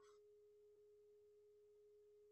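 Near silence, with only a faint steady electronic tone.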